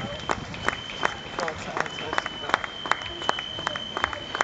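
Marathon runners' shoes slapping on the asphalt as a crowd of them passes, mixed with spectators' voices and clapping. Sharp cracks come about three times a second over a steady patter, with a thin steady high tone underneath.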